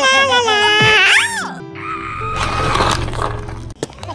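A high-pitched cartoon character voice babbling in sliding pitches over background music for about the first second, then about two seconds of a noisy sound effect.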